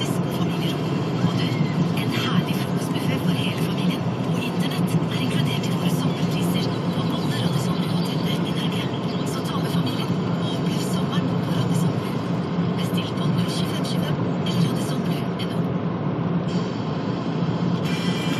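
Steady car cabin noise while driving on a highway: a constant low engine and tyre hum with road rush.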